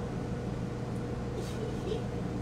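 Steady low mechanical hum of room equipment, with a faint soft sound about one and a half seconds in.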